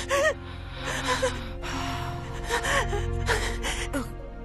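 A woman's frightened gasps and whimpering breaths, several in quick succession, over low, sustained film music.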